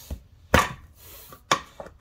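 Sharp metallic clicks and knocks of locking pliers clamping onto and working a stuck rubber-and-metal bushing in an aluminium Hydro-Gear ZT-2800 transmission housing: two loud knocks about a second apart, with lighter clicks around them.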